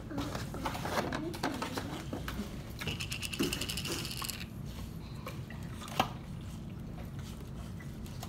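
Tableware and plastic being handled at a counter: small taps and knocks of forks and plates, a brief squeaky rasp around three seconds in, and a sharp click near six seconds.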